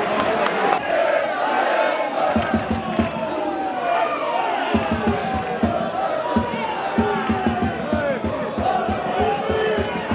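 Football stadium crowd chanting and singing together, with a low, fairly regular thudding beat joining about two seconds in.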